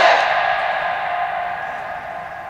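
The echo of a man's amplified voice ringing on through a public-address system after a drawn-out chanted phrase, fading away steadily.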